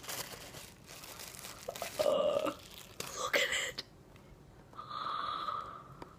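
Thin clear plastic packaging bag crinkling as a soft foam squishy toy is worked out of it. A couple of short vocal sounds come partway through, and a brief hum near the end.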